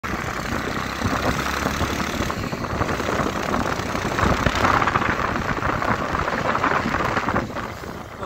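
Steady noise of a moving vehicle, engine and road noise with rushing air, swelling a little around the middle.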